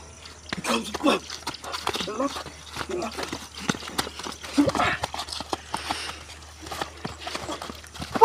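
Several men scuffling on wet concrete: a quick, irregular run of short slaps and knocks from feet and hands, with brief voices mixed in.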